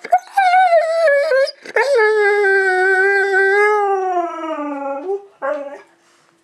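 Siberian husky howling in three calls. The first is short and higher. The second is long and held, slowly sinking in pitch with a slight rise at its end. The third is brief, near the end.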